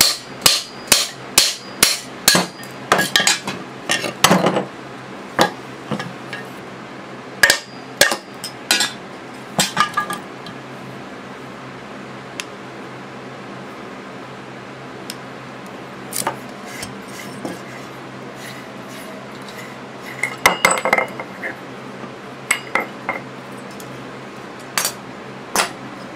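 Hammer blows knocking a stuck cast-aluminium piston off the shaft of a lawn mower engine, about two sharp strikes a second for the first few seconds, then scattered blows. After that come occasional metallic clinks and a short cluster of knocks about twenty seconds in, over a steady low hum.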